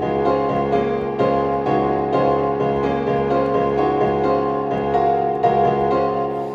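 Piano-like software instrument in Ableton Live, played from the Fingertip MIDI iPad app: the right hand swipes up and down the rows, bringing in new notes in even time about twice a second, over low notes held by the left hand.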